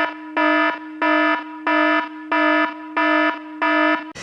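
Electronic alarm sound effect: a buzzy steady-pitched tone pulsing evenly about one and a half times a second, with a fainter held tone between the pulses.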